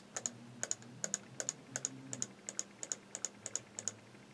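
Computer keyboard keys tapped repeatedly in an even rhythm, about three strokes a second, each stroke a quick double click, over a faint low hum.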